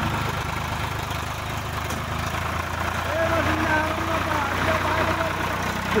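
Swaraj 855 FE tractor's three-cylinder diesel engine running steadily while the tractor pulls a loaded trailer.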